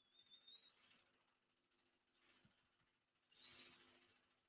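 Near silence: room tone with a few faint, brief soft noises.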